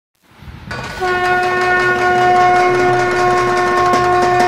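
One long, steady horn-like note that swells in over the first second and is then held at an even pitch.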